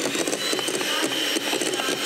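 Electric hand mixer running steadily with its beaters in a bowl of batter, a faint motor whine held above the whirring.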